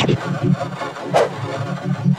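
Heavily distorted, effects-processed cartoon soundtrack: a low throb pulsing several times a second, with a short hissy burst about a second in.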